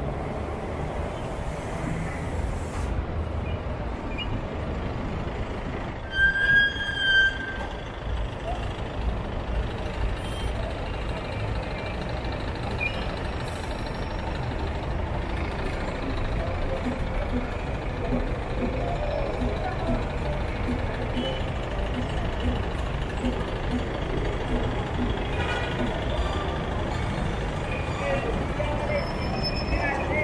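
Busy city street traffic: a steady low rumble of trucks, buses, cars and motorbikes, with passers-by talking. A loud, high-pitched, horn-like tone sounds briefly about six seconds in.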